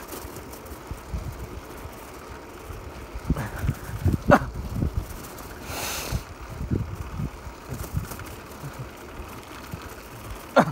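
Riding an electric-assist bicycle along a rough asphalt road: steady wind and tyre rumble with occasional bumps. A short high sound drops steeply in pitch about four seconds in, and a brief hiss follows near six seconds.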